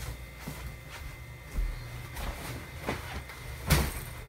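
Handling noise from getting ready: scattered rustles and light knocks as clothes and a backpack are moved about, with a soft thump about one and a half seconds in and a louder rustle near the end.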